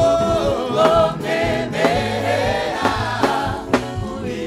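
A mixed choir of women's and men's voices singing a gospel song through microphones, over a live band with bass and drum hits.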